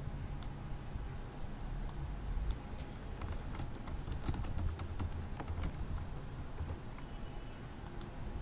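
Typing on a computer keyboard: scattered keystrokes in short irregular runs, busiest in the middle, over a steady low hum.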